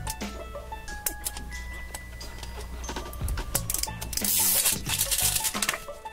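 Light background music with steady notes, over the crinkling and tearing of the wrapper being peeled off an LOL Surprise ball, with scattered clicks as the plastic shell is handled. A louder rush of crinkling comes about four seconds in.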